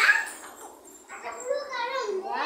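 Young children's high-pitched squeals: a loud one right at the start that fades within half a second, then shorter squeals from about a second in.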